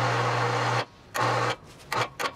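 A small motor running with a steady hum and a hiss, in two bursts, the first under a second long and the second shorter, followed by two short clicks near the end.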